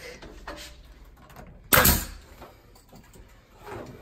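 A single sharp bang a little under two seconds in, with a brief hissy tail, over low room noise.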